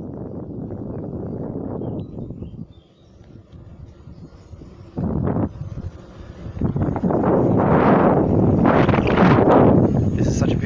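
Wind buffeting the microphone of a phone carried on a moving electric unicycle, in uneven gusts, loudest and roughest over the last three seconds.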